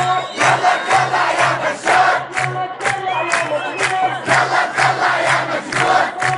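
A large crowd of protesters chanting in unison over a steady rhythmic beat, about two to three beats a second.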